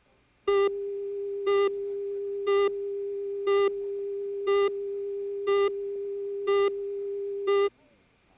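Broadcast videotape leader tone: a steady electronic tone that starts about half a second in, with a louder, buzzier beep once a second, eight in all, then cuts off suddenly near the end.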